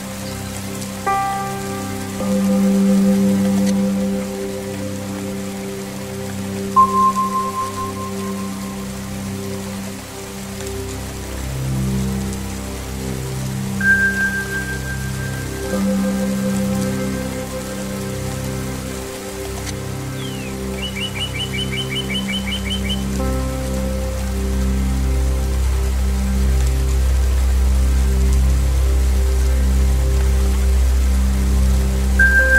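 Steady rain falling and splashing, mixed with slow ambient zen music: a low sustained drone, with bell-like tones struck about a second in, near seven seconds and near fourteen seconds, each ringing on and fading. A short bird trill comes in near twenty-one seconds.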